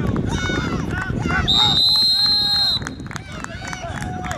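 A referee's whistle blown once, a single steady high blast of a little over a second starting about one and a half seconds in, blowing the play dead after a tackle. Voices from players and the sideline shout over it.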